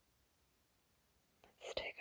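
Near silence: quiet room tone for the first second and a half, then near the end an audible breath and a woman's voice beginning to speak softly.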